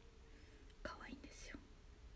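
Near silence: room tone, with a brief, faint whispered sound from a woman about a second in.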